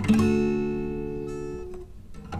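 Acoustic guitar: one chord struck at the start, left to ring and fade, then cut off shortly before the end.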